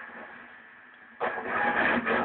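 Distorted electric guitar, a Peavey Vortex flying-V, through a low-quality microphone. A fading note gives way a little past halfway to loud playing that breaks in suddenly.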